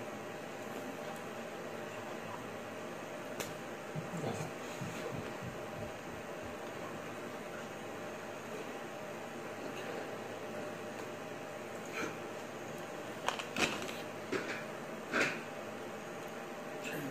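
Steady room hum with several brief taps and slaps, mostly near the end, from hands striking each other and brushing clothing while signing.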